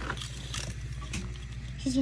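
Small plastic fidget cube clicking under the fingers: a handful of short, irregular clicks as its buttons and switches are worked.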